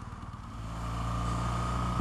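2014 BMW R1200GS boxer-twin engine running at low speed in traffic. About half a second in, its note becomes a steady low hum and grows gradually louder as the bike moves off.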